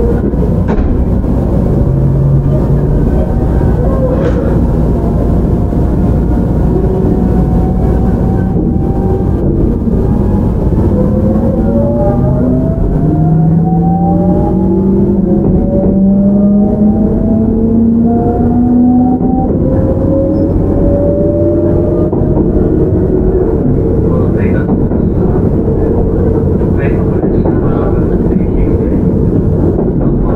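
JR Shikoku 7000 series electric train heard from on board: the unrenewed car's Hitachi GTO-VVVF inverter and traction motors give several whining tones that climb in pitch together as the train accelerates, over the steady rumble of wheels on rail.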